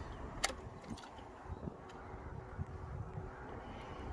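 Ignition key switched on in a 2019 BMW S1000XR: a click about half a second in, then a faint steady hum lasting about three seconds as the bike's electrics power up, over a low background rumble.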